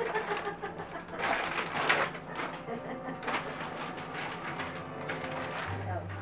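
Indistinct, murmured voices with a few brief rustling noises, the loudest about a second in and again just past three seconds.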